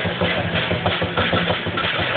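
Drum-and-cymbal percussion of a Chinese dragon dance beating a fast, steady rhythm, several strikes a second.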